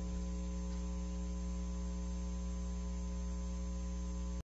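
Steady electrical mains hum, an even buzz with no other sound on top.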